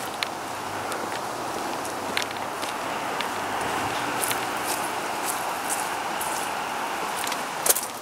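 A car passing on the street: a steady rush of tyre and road noise that swells in the middle and fades, with a few light clicks of footsteps.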